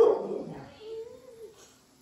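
A dog barks once at the very start, then gives a single short whine about a second in.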